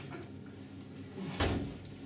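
A single dull thump about a second and a half in, over quiet room tone.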